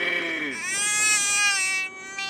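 A baby vocalizing: a short cry at the start, then one long high-pitched squeal lasting more than a second.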